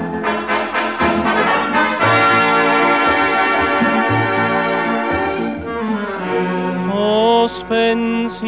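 Orchestral instrumental passage of an Italian serenade, with brass to the fore: a few short accented chords in the first two seconds, then held chords, and a melody rising step by step near the end.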